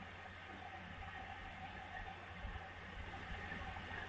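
Faint steady hiss with a low hum underneath, the background noise of the broadcast recording with no voice on it.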